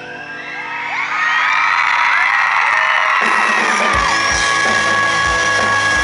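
Live rock band with piano, guitar and drums playing at a concert, heard through a phone microphone in the crowd, while audience members scream and whoop. The band swells back in about three seconds in, with a steady drum beat from about four seconds.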